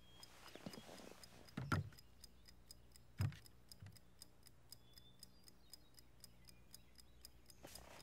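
A pocket watch ticking faintly and steadily, about four ticks a second, from inside a bowl of bread dough; the ticking gives away where the lost watch is. Two soft thumps come just under two seconds in and a little after three seconds.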